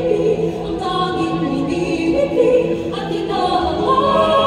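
Mixed choir of men and women singing, with many voices holding sustained chords. The sound swells upward in pitch and loudness near the end.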